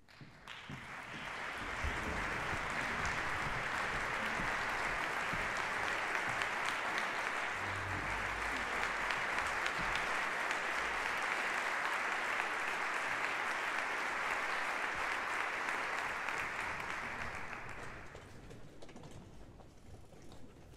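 Concert audience applauding. The applause builds over the first couple of seconds, holds steady, and dies away near the end.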